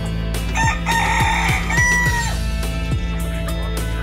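A Thai bantam rooster crows once, starting about half a second in and ending in a held note a little after two seconds. Background music with a steady beat plays throughout.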